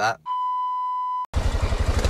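A steady electronic beep held for about a second and stopping sharply. Then a sudden cut to a dirt bike engine running with a fast, low pulsing, heard from the rider's camera.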